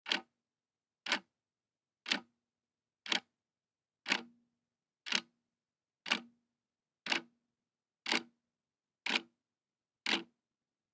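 A clock ticking: one sharp tick every second, ten in all, with dead silence between the ticks.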